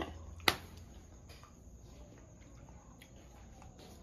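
Quiet room tone with a low hum, broken by one sharp click about half a second in and a couple of faint ticks later on.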